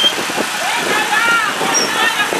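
A Land Rover Discovery 4 moving slowly on a dirt road, its running noise a steady hiss with a few small knocks, mixed with the voices of people nearby.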